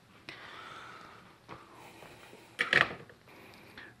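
Quiet handling sounds on a workbench: a soft rustle, a light tap, then a brief clatter about two and a half seconds in as a tool is set down.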